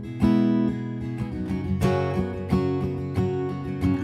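Capoed acoustic guitar strummed on its own, with several sharp strums and the chords ringing on between them.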